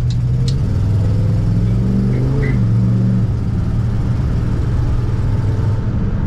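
Street-rodded 1939 Plymouth's engine heard from inside the cabin while accelerating: the engine note climbs for about three seconds, then drops and runs steady.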